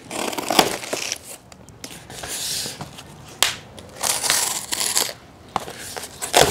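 Packing wrap and cardboard crinkling, tearing and rustling as a shipped steel plate is unwrapped by hand, in several uneven bursts with a few sharp clicks.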